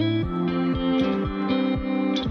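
Background music with a steady beat, about four beats a second.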